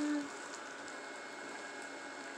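A baby's held 'oo' vocal sound on one steady pitch, sliding a little lower as it ends a fraction of a second in, then only faint steady room noise.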